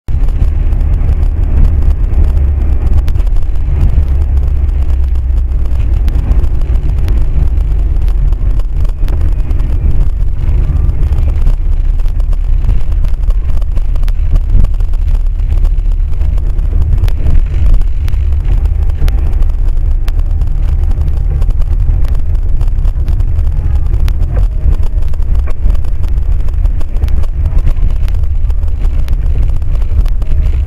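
Inside a moving car, engine and tyre noise picked up by a windshield-mounted dashcam: a loud, steady low rumble on a wet road.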